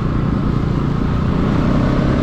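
Motorcycle engine running steadily while riding, with a rumble of wind and road noise on the bike-mounted microphone and no sharp revving.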